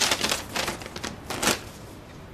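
A sheet of paper being unfolded and handled: several crisp rustles that stop about a second and a half in.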